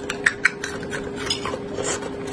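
Chopsticks clicking sharply twice against a ceramic bowl, then a run of short crackly sounds as they work through the vegetables, with close-miked chewing.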